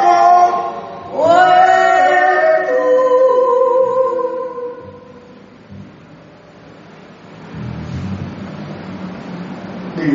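Unaccompanied voices singing a hymn together, a cappella, in two phrases. The second phrase ends on a long held note that fades out about halfway through, and low background noise follows.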